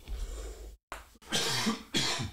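A man coughing and clearing his throat in two bouts, the second one louder.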